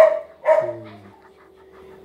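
A dog giving two short barks about half a second apart, the second one sliding down into a low falling tone.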